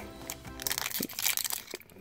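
Foil wrapper of a Pokémon TCG booster pack crinkling as it is handled, with faint background music underneath.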